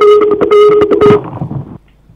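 A steady, horn-like buzzing tone with crackling, coming over the conference sound system from a remote participant's audio line while it is being connected; it cuts out a little over a second in. It is a fault on the line, heard before the remote speaker's voice comes through.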